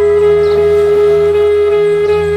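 Bansuri flute holding one long, steady note over a low sustained drone, in slow meditative music.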